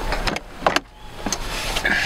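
A car glove box latch clicks and the lid drops open, with a sharp click about two-thirds of a second in. Papers then rustle as they are pulled out, with a brief squeak near the end.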